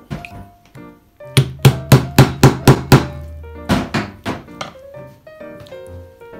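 Background music, with a quick, evenly spaced run of about seven loud knocks in its middle, about four a second, over a held bass note.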